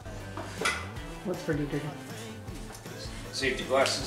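Light clinks and knocks of a pine board and a sliding compound miter saw being handled and set up for a cut, with a louder cluster of knocks near the end; the saw is not heard cutting.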